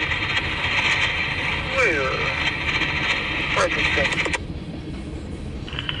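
Railroad radio transmission over a scanner: a hissing, static-filled channel with a faint crew voice calling a signal. The hiss cuts off suddenly about four seconds in, and a new transmission with a voice opens near the end.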